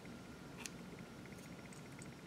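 A single faint snip of hair-cutting scissors about half a second in, cutting synthetic wig bangs, with a few lighter ticks of the blades and hair being handled after it.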